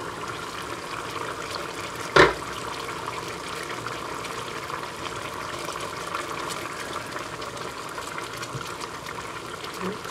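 Curry sauce simmering in a frying pan, a steady bubbling hiss, with one sharp knock about two seconds in.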